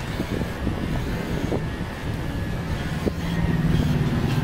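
Corded electric pet clipper running with a steady hum as it shears a Shih Tzu's coat, with a few light clicks; the hum grows stronger about three seconds in.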